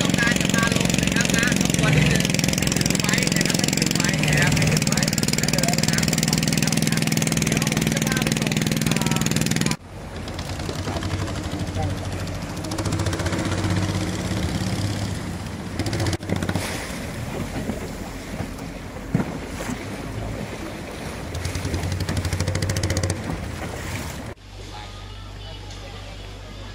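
A long-tail boat engine runs loudly and steadily. About ten seconds in, the sound cuts abruptly to a quieter, uneven boat sound, with people's voices at times, and near the end it cuts again to a low steady hum.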